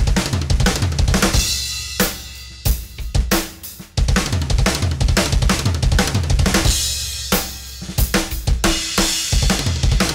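Tama Starclassic drum kit played through a double bass drum fill exercise. Fast bass drum strokes from an Iron Cobra double pedal alternate with snare and tom hits and cymbals, in short phrases with brief pauses where a hit rings out.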